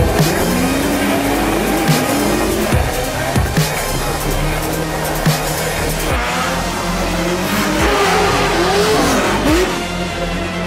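Drift car engines revving up and down again and again, with tyre squeal, mixed under background music with a steady beat.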